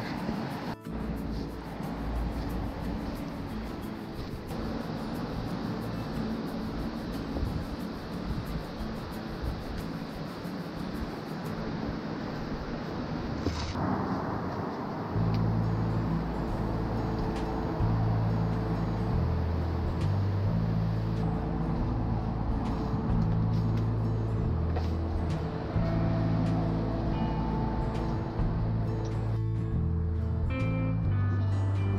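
Background music: a bass line of changing notes comes in strongly about halfway through, over a steady rushing noise in the first half.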